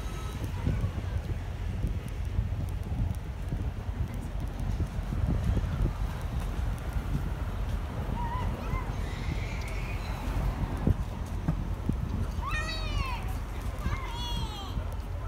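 Street ambience heard on a walk: a steady low rumble of wind and handling noise on the phone microphone, with faint voices. Near the end, a high pitched call that arches and falls is heard twice.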